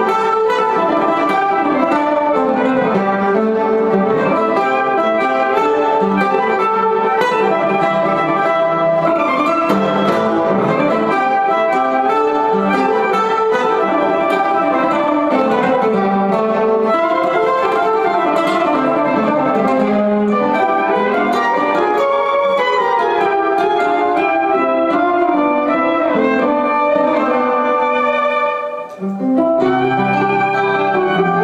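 Live acoustic jazz: a violin plays the melody over strummed and picked guitar accompaniment. The sound dips briefly near the end, then the playing resumes.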